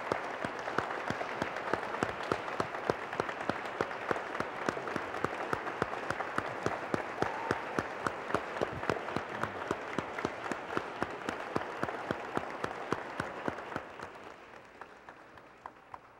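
A room full of people applauding: dense clapping with some sharper, closer claps standing out. It fades away over the last couple of seconds.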